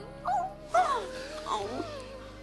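Three short, high vocal sounds, wavering up and down in pitch, over soft background music.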